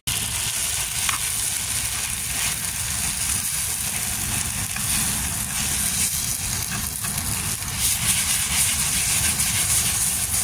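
Chard, chilli peppers and onions sizzling in a pan over an open wood fire: a steady frying hiss with a low rumble underneath and a few light scrapes of the spatula.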